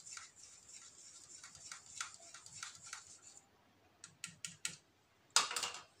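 A small spatula stirring a milk-and-oil emulsion in a small jar, clicking and scraping quickly against the jar's sides. After a brief pause come a few sharp separate clicks, then a louder knock near the end.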